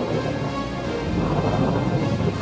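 A steady deep rumble, like thunder or a blast wind, under background music.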